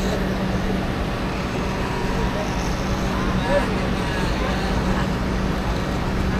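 Electric hair clipper running with a steady buzz as it shaves a head down to stubble, with faint voices in the background.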